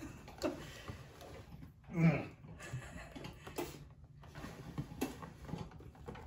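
A person's laughter and short murmured vocal sounds without clear words, the loudest about two seconds in, with a few light clicks.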